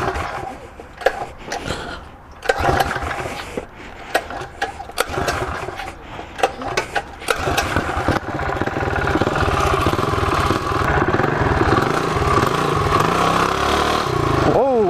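Coleman CT200U-EX minibike's 196cc single-cylinder four-stroke engine being pull-started: a few knocks and tugs, then it catches about seven seconds in and runs steadily at idle.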